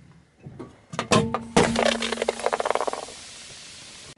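A car tyre crushing an aluminium energy drink can: a sharp crack about a second in, then a second louder crack as the can bursts and the carbonated drink sprays out with a hiss that fades over the next second or so.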